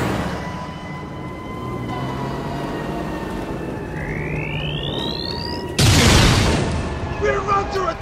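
Sci-fi energy-beam sound effect rising in pitch for under two seconds, then a sudden loud explosion about six seconds in that dies away over about a second. Steady held notes of background music run underneath.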